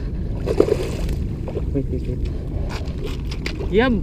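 Steady low rumble of wind on the microphone with water sloshing against a stone seawall, and a man's voice briefly near the end.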